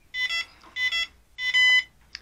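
Cheerson CX20 radio transmitter's buzzer beeping: two quick beeps, two more, then one longer beep. It sounds as the SWB switch is turned off to end stick and switch calibration, signalling that the calibration is finished and the transmitter is ready to use.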